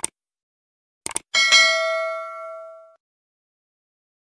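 Subscribe-button animation sound effect: a mouse click, a quick double click about a second later, then a bright bell ding that rings out and fades over about a second and a half.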